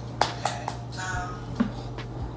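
A few short, sharp clicks from a person eating from a bowl at the table, and a brief high-pitched vocal sound about a second in, over a steady low hum.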